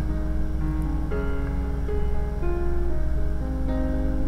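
Background instrumental music with sustained notes that change every second or so over a steady low bass.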